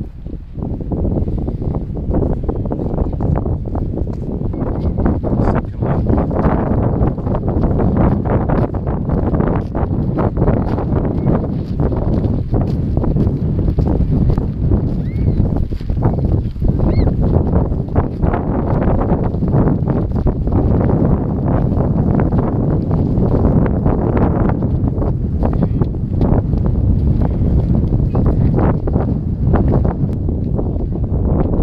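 Heavy wind buffeting an action camera's microphone: a loud, uneven rumble that rises and falls with the gusts.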